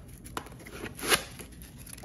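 Hands handling the foam insert of a hard plastic carrying case: a light click, then a brief rustling scrape about a second in.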